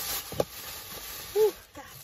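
A single short knock as supplies are handled, then a woman's short breathy 'whew' about a second later, over a faint steady hiss.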